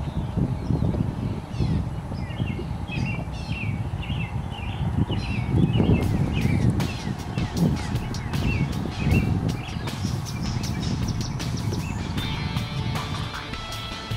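Birds chirping repeatedly over a steady low rumble of wind and water, with a run of sharp irregular clicks starting about halfway through while a big fish is fought on rod and reel.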